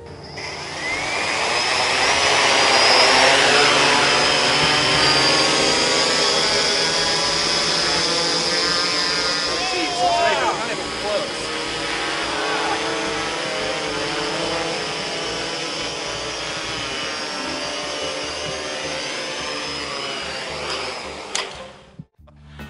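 IdeaFly IFLY-4 quadcopter's four electric motors and propellers spinning up with a rising whine, then running steadily as it lifts a pound of lead fishing sinkers at about half throttle, fading out near the end.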